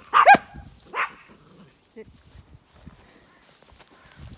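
A small herding dog barking sharply a couple of times in the first second, then falling quiet.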